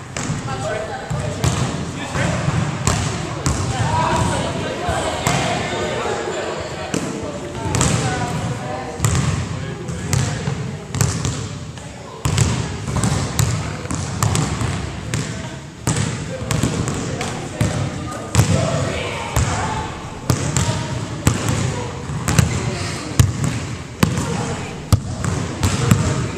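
Basketballs bouncing on a hardwood gym floor, many irregular impacts throughout, over untranscribed background chatter of the class.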